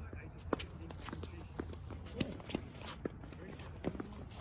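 Doubles rally of ball hitting: a few sharp knocks of the ball struck back and forth by paddles, about half a second, two and a half, three and four seconds in. Players' footsteps shuffle on the hard court between the hits.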